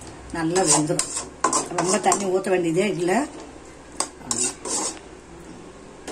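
A steel ladle stirring chicken in an aluminium kadai, scraping the pan's side and clinking against the metal. The stirring stops about five seconds in.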